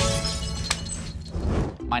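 Tail of a title-sting sound effect: glass shattering, its ring and scattered tinkle fading out together with a held musical chord, with one sharp click a little under a second in.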